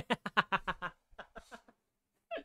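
A man laughing: a quick run of ha-ha pulses, about seven a second, that tails off into a few quieter, breathy ones after about a second.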